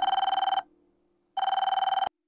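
Office desk telephone ringing: two electronic rings, each about a second long, with a short pause between.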